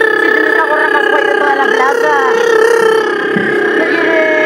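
A woman singing one long, steady "aaah" into a microphone as a vocal warm-up, with other voices wavering alongside it.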